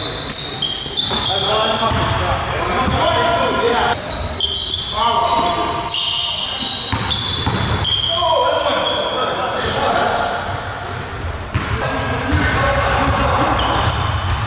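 Pickup basketball game on a hardwood gym court: a basketball being dribbled and bouncing, with players' voices and short high sneaker squeaks in a large, echoing gym.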